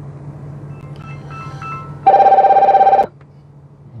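A phone's electronic ring: a few faint short beeps, then a loud trilling tone lasting about a second that cuts off suddenly, over a steady low hum.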